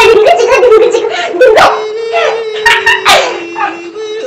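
A child's high-pitched shrieking laughter and voices, with long steady held notes through the second half.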